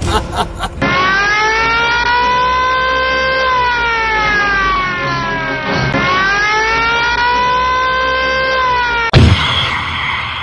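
Dramatic synthesized music sting: a sustained electronic tone that slowly rises and falls twice, over a low rumble. A sudden loud hit cuts it off near the end.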